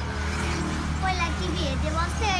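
A girl speaking, with a steady low rumble underneath.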